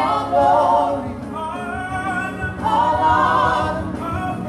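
A gospel praise and worship team of women's and men's voices singing together into microphones, amplified through the church sound system.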